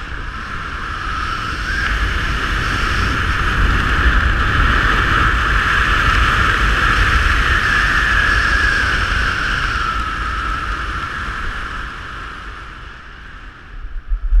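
Wind rushing over the camera's microphone during a fast descent under a parachute canopy, a steady rush with a hiss-like band that builds to its loudest about halfway through and eases off near the end as the jumper nears the ground.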